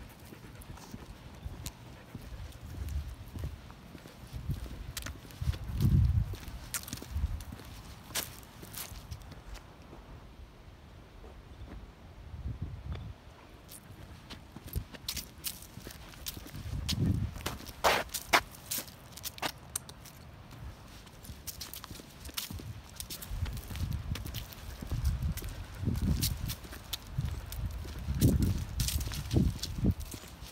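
Walking footsteps on a dry dirt path strewn with fallen leaves, with scattered sharp clicks and occasional low thumps.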